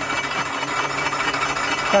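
Milling machine spindle running steadily while an insert face mill takes a light finishing pass, about two thousandths deep, across steel angle. It gives an even cutting noise over a constant hum.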